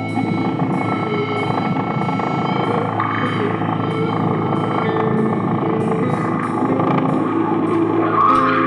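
Live rock band playing a loud, droning noise passage: electric guitar noise and feedback run through effects pedals, with sustained tones under it and a light tick about twice a second.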